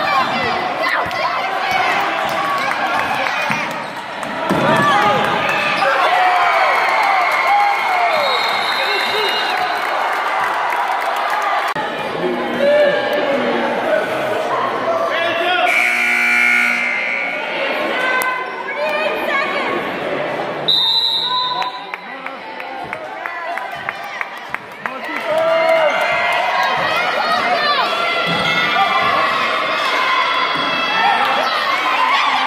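A basketball bouncing and dribbling on a hardwood gym floor, with players and spectators shouting and calling over it throughout.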